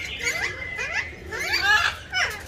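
Caged parakeets calling: a run of short, shrill screeches that sweep quickly in pitch, several overlapping, thickest just before the end.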